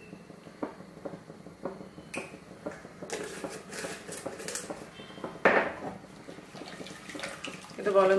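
Scattered light clinks and knocks of pots and utensils, with one louder clatter about five and a half seconds in.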